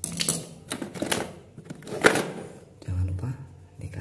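Tools and hard objects clattering against each other and the plastic toolbox as someone rummages through it, a series of sharp clacks, the loudest about two seconds in.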